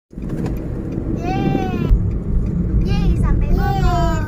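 Steady low road and engine rumble inside a moving car on a highway, with a high-pitched voice sounding out over it three times, each a drawn-out glide of about half a second.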